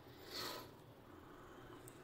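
A single short breath about half a second in, over faint room tone.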